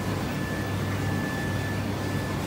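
Steady supermarket background hum from the refrigerated display cases and ventilation: a low hum with airy noise and a thin, steady high whine.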